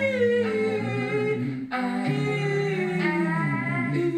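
Layered a cappella vocal music built up on a loop station: a hummed low line holds underneath while a sung melody and harmonies run over it. The upper voices break off briefly a little before halfway, then come back in.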